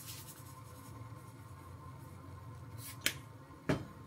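Small kitchen handling sounds at the stove: a brief rustle at the start, then a sharp click about three seconds in and a heavier knock just after, as a small plastic-capped seasoning bottle is closed and set down on the counter.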